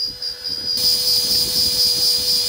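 Small electric RC winch motor running steadily with a high whine, paying out its fishing line; it gets louder about three quarters of a second in.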